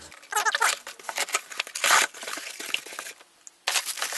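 Box cutter slitting the packing tape on a cardboard box, a run of irregular scratchy rasps, then the flaps coming open and plastic air-pillow packing crinkling near the end.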